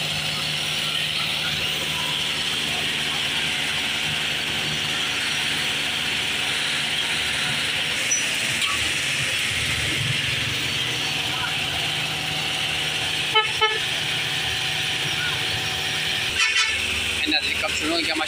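Steady running of road-paving machinery: the diesel engines of an asphalt paver and the dump truck tipping asphalt into its hopper. Two short horn toots come about 13 seconds in, and a few more near the end.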